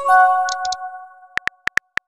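Phone messaging sound effects: a bright message chime of several tones that rings out and fades over about a second. Then a quick, irregular run of keyboard tap clicks.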